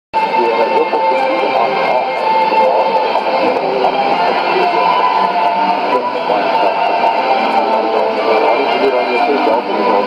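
Shortwave AM broadcast of the South African Radio League's Afrikaans programme on 17760 kHz, voice and music heard through a Sony ICF-2001D receiver's speaker. The sound is thin and band-limited, typical of AM shortwave reception.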